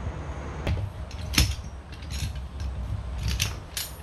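Metal clinks and knocks as the steel frame of a hitch-mount bike carrier is handled and its arms unfolded: several sharp clacks, the loudest about a second and a half in, over a low steady rumble.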